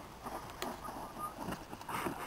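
Faint, irregular knocks and rattles of a bicycle rolling and bouncing down a bumpy grassy slope.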